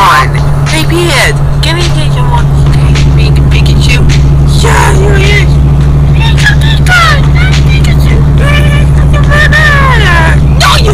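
High-pitched voices chattering and squealing with no recognisable words, over a loud, steady low drone.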